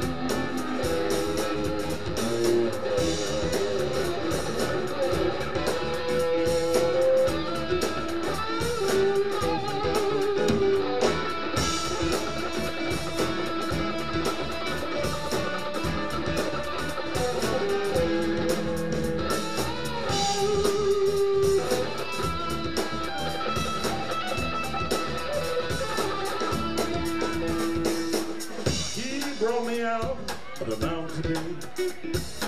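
Live blues-rock jam band playing an instrumental passage: electric guitar lines held and bending over bass guitar and a drum kit.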